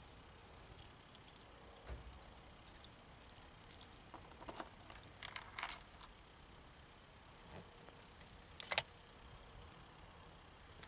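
A bunch of keys jangling, with small clicks and rattles as a key is worked into the lock of a motorcycle's plastic top box, and one louder sharp click near the end.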